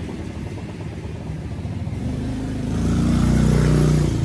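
A motor vehicle engine passing close by over a low background rumble. It grows louder from about two seconds in and is loudest near the end.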